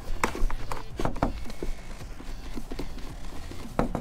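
Scattered light clicks and knocks, irregularly spaced, from a hand turning and seating the plastic coupling nut of a water line onto an RV toilet's water inlet valve.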